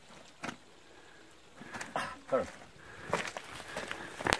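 Faint voices over a quiet outdoor background, with a single sharp click about half a second in.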